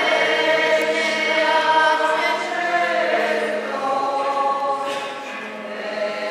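A choir singing a slow hymn, several voices holding long notes and moving from note to note together.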